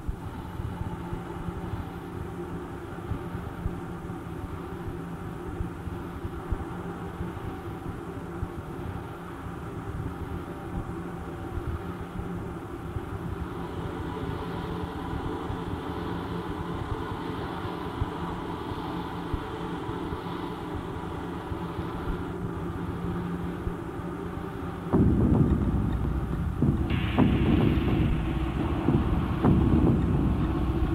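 Lo-fi cassette recording of a live set: a steady droning, hum-laden sound with held tones. About 25 seconds in, a much louder, bass-heavy rumbling noise cuts in and carries on.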